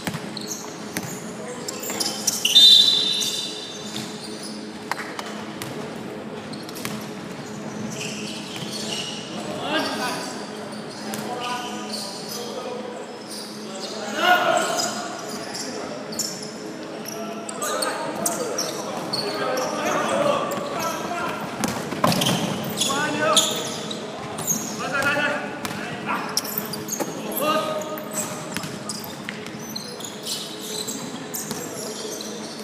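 A basketball bouncing on an indoor court during play, with repeated sharp knocks of the ball and footfalls and players' voices calling out, all echoing in a large sports hall. A brief high squeak comes about two and a half seconds in and is the loudest sound.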